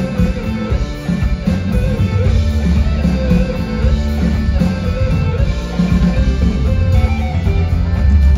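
Live folk-rock band playing loudly, with electric guitars and a drum kit under a melodic line.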